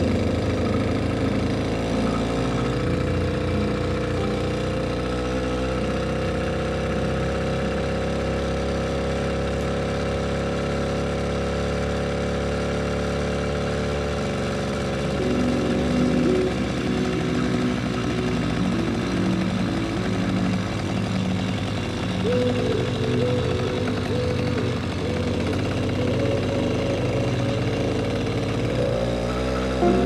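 Small engine of a motorized bike running while it is ridden, its pitch climbing over the first several seconds and then holding.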